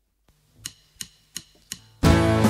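Four evenly spaced sharp clicks, about three a second, counting in the song; strummed acoustic guitar comes in right after the fourth.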